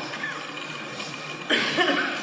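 A hushed stretch of stage room tone, then about one and a half seconds in a sudden short vocal burst from an actor, harsh and cough-like.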